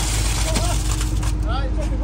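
Small diesel site dumper running close by: a steady low engine rumble with a rough hiss over it.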